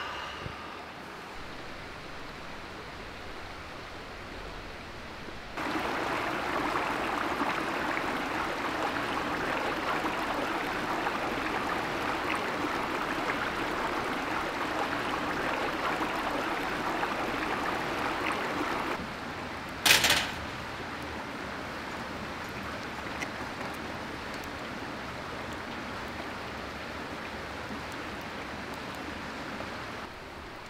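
Steady rushing of a stream flowing over rocks. It grows louder and coarser for about thirteen seconds through the middle, with one sharp click near two-thirds of the way through.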